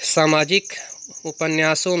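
A man speaking, with a cricket chirping steadily in the background as a high, rapid pulsing trill.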